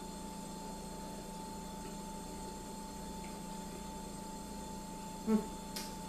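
Steady electrical background hum with a constant mid-pitched buzzing tone over a lower hum, unchanging throughout.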